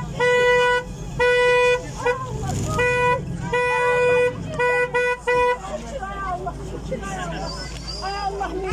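Car horn honking in a run of long and short blasts, about eight in all, stopping about five and a half seconds in: celebratory honking for a homecoming.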